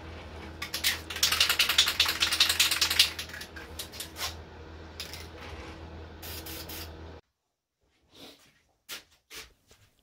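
Aerosol can of Minwax PolyShades finish spraying: a crackly hissing burst about a second in that lasts about two seconds, then several short bursts, over a steady low hum. The sound cuts off suddenly about seven seconds in.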